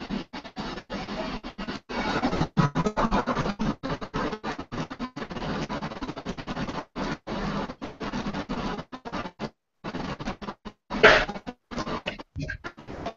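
Music, with guitar just before, coming through a video-call connection and breaking up into choppy fragments with many brief dropouts. It cuts out completely for a moment, then there is a loud burst near the end.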